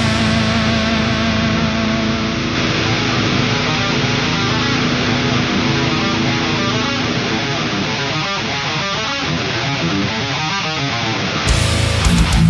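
Death metal recording: distorted electric guitar holding sustained chords with the highs filtered away, until the full band with drums crashes back in near the end.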